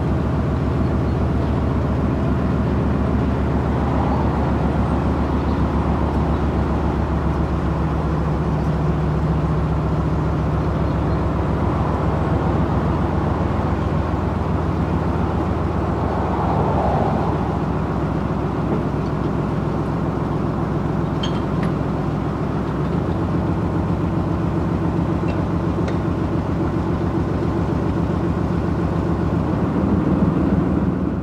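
A narrowboat's inboard diesel engine running steadily at low revs, a low, even throb, with a slight change in its note about two-thirds of the way through.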